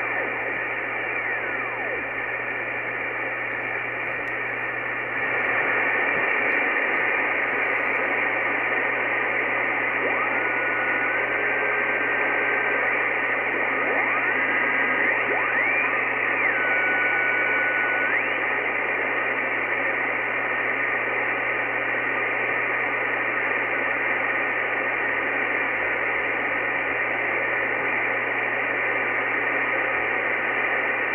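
Icom IC-R8500 communications receiver in upper-sideband mode hissing with band noise as it is tuned slowly across the 2 m satellite downlink. Thin whistling tones glide up and down through the hiss and hold steady for a moment as signals are tuned across; the hiss gets louder about five seconds in.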